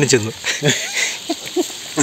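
Speech only: a man says a word at the start, then there are a few short, broken fragments of talk.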